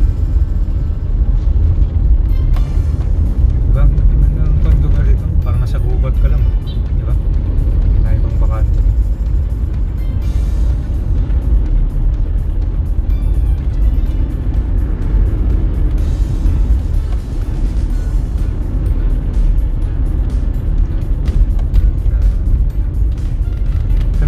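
Steady low rumble of road travel in a moving vehicle, with wind on the microphone, under background music.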